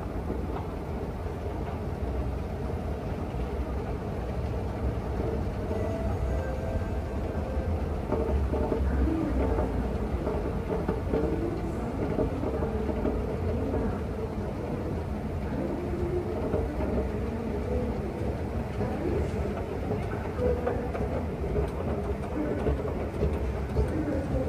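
Steady low rumble of an underground MRT station, from the running escalator and trains, with faint indistinct sounds above it.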